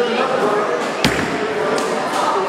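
Bowling-alley hall noise with background voices and a single heavy bowling-ball thud about a second in.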